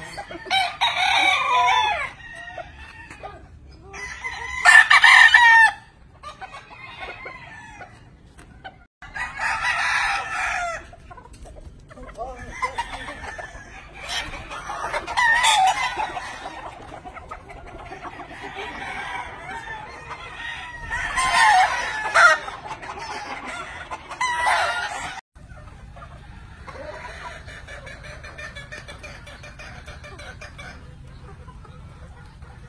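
Gamefowl roosters crowing again and again, about six loud crows of a second or two each, with clucking between them.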